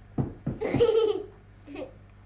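A young girl laughing: a burst of high-pitched laughter lasting about a second, then a short second laugh near the end.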